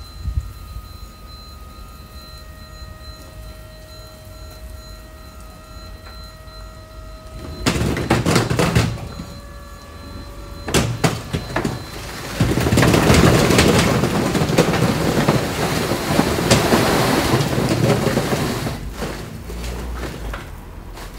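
A tipper lorry's body lifting with a steady high whine, then its load of broken bricks and rubble sliding out: two short rushes and, from a little past halfway, a long loud rumbling pour onto the ground.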